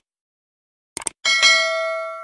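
Mouse-click sound effects as the cursor clicks a Subscribe button, a double click at the start and a quick cluster about a second in, then a bright bell ding that rings on steadily and slowly fades. The ding is the loudest sound.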